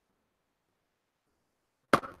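Near silence, broken near the end by one sharp click just before a man's voice comes back in.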